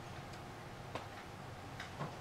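Two sharp clicks, about a second in and near the end, from a laptop being clicked at while navigating, over faint room hum.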